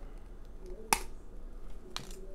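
Plastic cap of a supplement pill bottle being handled and opened: one sharp click about a second in and a smaller click near the end.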